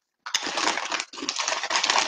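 A foil snack bag of salt-and-lemon potato chips crinkling and crackling as it is opened and handled, with a sharp click shortly after the start.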